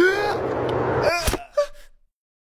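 A cartoon character's voice wailing in gliding, rising and falling cries over a steady hiss. The hiss stops about a second in, followed by a sharp crack and a short final cry.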